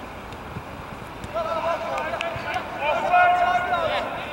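Players on a soccer pitch shouting and calling to each other, several voices coming in about a second and a half in, over a steady outdoor background hiss.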